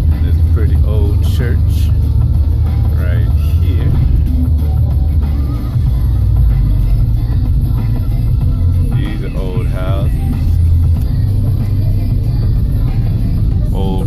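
Low, steady rumble of a moving car heard from inside the cabin, with music and a voice playing over it.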